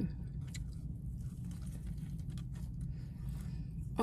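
Close-up chewing of a mouthful of savory egg crepe wrapped around a Chinese donut: faint, irregular wet mouth clicks over a low steady hum.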